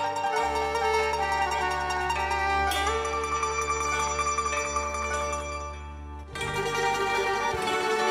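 A band playing an instrumental passage of a Greek popular song, led by plucked strings. The music thins out briefly about six seconds in, then comes back fuller.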